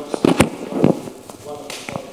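Irregular sharp knocks and clicks, a handful in two seconds, with low talk between them.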